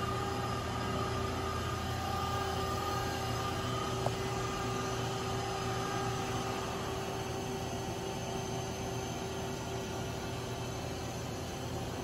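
Steady machine hum with a few constant whining tones over a low rumble, from a powered-up Mazak Smart 350 CNC turning center idling. A single faint click comes about four seconds in.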